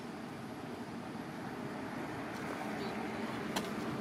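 Steady low outdoor background rumble with one short sharp click near the end.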